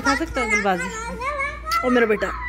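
A young child's high-pitched voice, vocalizing in a sing-song way with long drawn-out, sliding notes.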